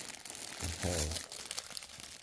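Clear plastic garment bag around a packaged shirt crinkling as it is handled, with irregular small crackles.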